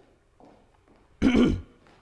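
A person clears their throat once, loudly and briefly, a little over a second in.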